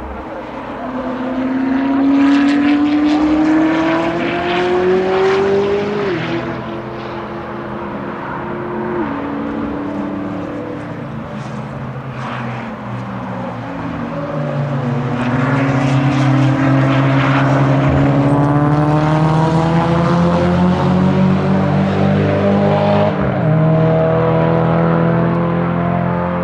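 Sports cars accelerating hard out of a corner on a race circuit, engine pitch climbing through the gears. There are upshifts about six and nine seconds in, then a long climb on another car with an upshift near the end.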